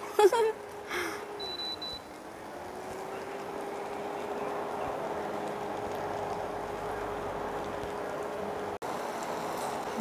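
Sauce-coated bread rolls sizzling gently in a flat pan, under a steady electric hum from the glass-top cooktop that dips in pitch and rises back about two seconds in.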